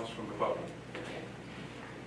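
Indistinct voices murmuring in a quiet meeting room, with a brief louder voice about half a second in and a light knock at the very start.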